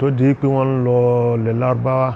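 A man chanting a short repeated phrase in a sing-song voice, drawing the syllables out on long, steady held notes.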